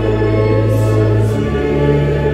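A church congregation singing a hymn over organ accompaniment, with long held chords; the bass note of the organ changes about one and a half seconds in.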